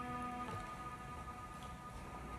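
Distorted electric guitar chord ringing out faintly and fading away, its lower notes dying out about half a second in.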